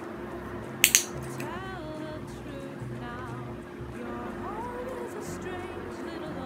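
Background music; about a second in, a handheld pet-training clicker snaps twice in quick succession, the loudest sound. The caption calls it a mistimed click.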